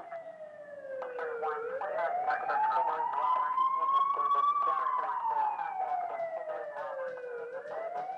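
A siren wailing. Its pitch falls over the first second and a half, climbs slowly to a peak about halfway through, falls again and starts to rise near the end, with many sharp clicks and knocks over it.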